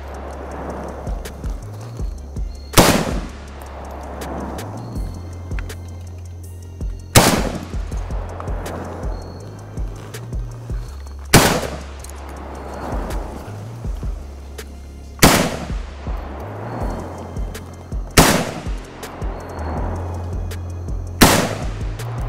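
A PSA AK-47 GF3 rifle in 7.62×39mm fired in slow, aimed semi-automatic shots. Six shots come three to four seconds apart, each followed by a ringing echo, with background music carrying a steady bass underneath.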